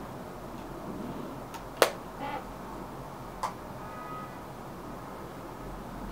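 Makeup being handled: one sharp click about two seconds in and a fainter click a little later, over steady low room hiss.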